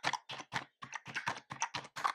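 Rapid typing on a computer keyboard, about six or seven keystrokes a second, as an IP address is entered number by number.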